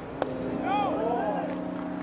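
A single sharp pop of a pitched baseball landing in the catcher's mitt. It is followed by a steady low hum of ballpark noise with a brief call rising and falling over it.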